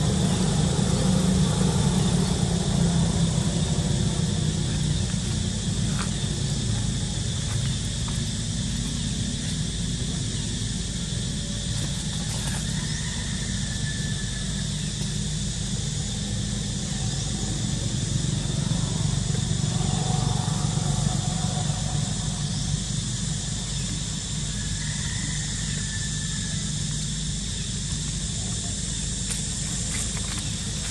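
Outdoor ambience: a steady low rumble under a steady high drone, with two brief high calls, one about 13 seconds in and another about 25 seconds in.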